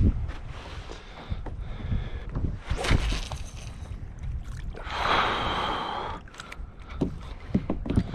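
Water sloshing against a plastic kayak hull, with a low rumble and a few light knocks, and a longer rushing sound about five seconds in.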